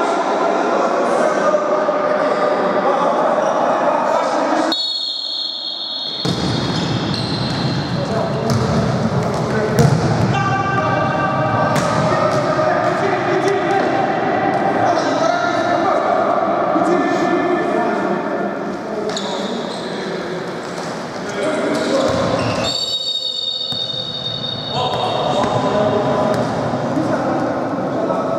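Futsal ball being kicked and bouncing on a wooden sports-hall floor, the thuds echoing in the large hall, with players shouting over the play. Twice, about five seconds in and again near the end, there is a brief high steady tone.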